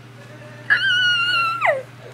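A single high-pitched whine, held steady for about a second and then dropping sharply in pitch at the end.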